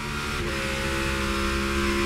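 NASCAR Cup Series race car's V8 engine running at a steady high speed, a held drone with no change in pitch, heard from on board the car.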